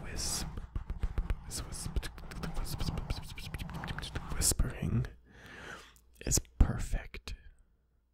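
Inaudible whispering and wet mouth clicks and smacks right against a foam-covered microphone, with fingers rubbing the foam. The dense clicking thins out after about five seconds, a few loud smacks follow, and it stops about a second before the end.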